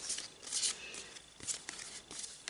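Stacks of Magic: The Gathering cards being handled by hand, giving a few short dry rustles and light taps as cards slide and are set down.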